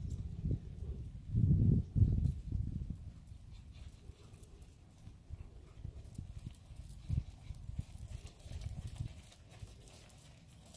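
Hoofbeats of a black quarter pony cantering under a rider on soft sand arena footing: dull, uneven low thuds, heaviest about a second and a half in, then lighter.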